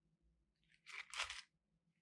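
Crinkly plastic hook packet being handled, two brief crackles about a second in.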